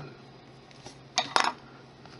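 A clay sculpting tool set down on the work surface: two quick clinks close together, a little over a second in.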